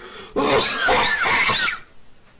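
A man laughing hysterically: a long, breathy, rasping burst of about a second and a half with short high squeaks running through it.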